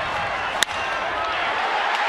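Steady ballpark crowd noise, cut by one sharp crack of a bat hitting the pitch about half a second in.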